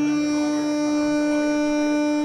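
A chromatic harmonica holding one long, steady note.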